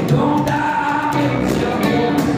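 Live music: a man singing held notes into a microphone over a strummed Fender acoustic guitar.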